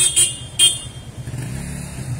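A car engine running at low speed, its low hum growing stronger about one and a half seconds in as the vehicle comes closer. A few short hissing noises come in the first half second.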